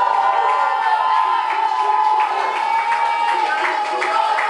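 Crowd of people shouting and cheering, many voices overlapping at once without a pause.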